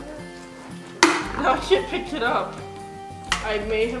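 Background music, with a sudden loud knock about a second in as a bowl of slime is smashed with foam Hulk gloves, followed by a girl's voice and a second sharp sound near the end.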